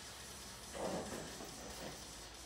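Faint sounds of a woman exercising on a foam floor mat, with a soft rush of noise about a second in as she rolls up from her back into a press-up.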